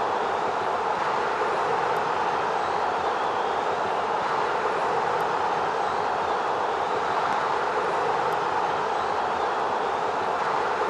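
A steady, even rushing noise that holds at one level throughout, with no voices, cheering or whistles in it.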